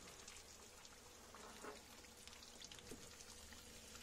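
Faint sizzling of floured anchovies frying in shallow hot oil in a pan, with scattered small crackles.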